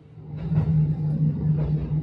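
Inside a moving train: a steady low rumble and hum from the carriage, swelling up over the first half second.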